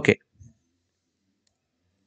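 Near silence after a spoken "okay", with one faint, soft low thump about half a second in.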